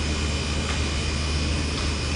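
Steady low hum and even background noise of a warehouse store's building systems, such as ventilation and refrigeration, with no sudden sounds.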